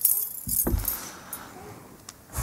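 Light metallic jingling with a soft low thump about half a second in, fading to room noise.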